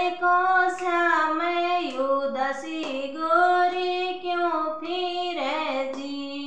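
A woman singing an ajwain geet, a Rajasthani folk song sung at the birth of a son, alone and without instruments. She sings in a high voice, in long held notes that step up and down.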